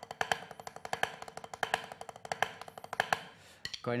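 Drumsticks playing a fast inverted roll on a practice pad: a single stroke, then double strokes, with some strokes accented. The rapid sticking stops just before the end.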